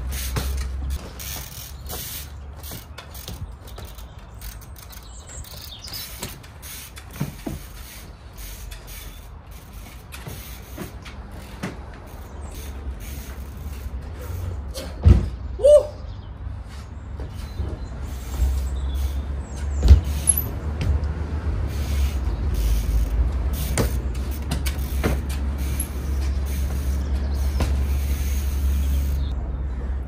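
A mountain bike being ridden trials-style over wooden pallets: scattered knocks and clicks of the tyres and bike on the wood, pallets creaking, and loud landing thuds about fifteen seconds in and again about twenty seconds in, over a steady low rumble.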